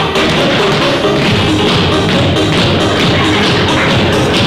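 A group of tap dancers' shoes striking the hard floor in quick, dense rhythms over loud music.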